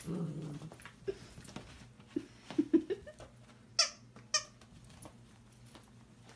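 Small dachshund playing with a toy: low, short grunting sounds, then two short high-pitched squeaks about half a second apart just past the middle.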